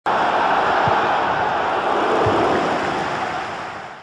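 A steady rushing-noise sound effect that starts abruptly and fades out over the last second, with two faint low thuds under it.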